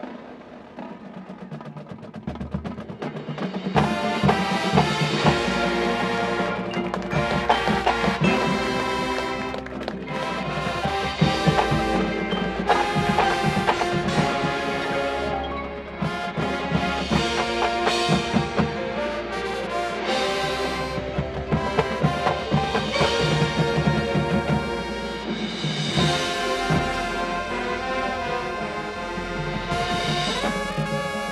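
A marching band of winds and percussion, with a front ensemble of mallet keyboards and drums, playing live. It begins softly and swells to the full band about four seconds in, then holds loud with sharp percussion accents.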